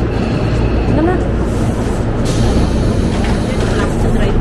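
Stopped electric commuter train, a Tobu 10030-series set, standing at the platform with a steady low hum, and a sudden hiss of air a little past halfway as its doors open.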